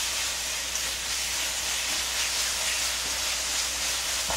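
Dried anchovies and chopped chillies sizzling in oil in a nonstick frying pan, a steady hiss, while a wooden spoon stirs them through the freshly added grain syrup (jocheong).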